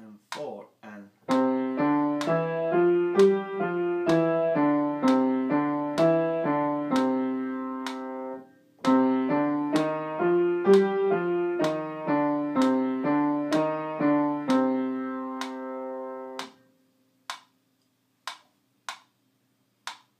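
Piano playing a beginner finger exercise of quick running notes, first in a major key, then after a short pause repeated in the minor, ending on a held note that dies away. A few sharp clicks come just before the playing and a few more after it.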